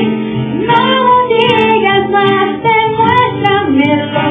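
Live acoustic performance: a voice singing a slow pop melody over a strummed acoustic guitar.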